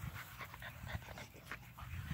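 An American Bully puppy panting faintly, with small irregular ticks and rustles.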